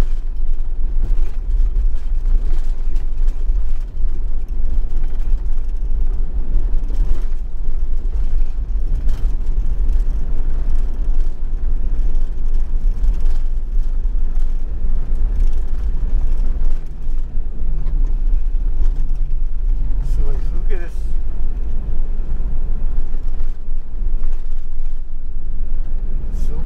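Camper van driving on a paved road: a steady, deep rumble of engine and tyre noise, heavy in the low end.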